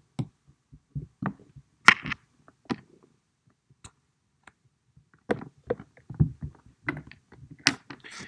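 A stylus tapping and knocking on a tablet's glass screen while drawing. The short, sharp taps come irregularly: the loudest about two seconds in, then a denser run of them in the second half.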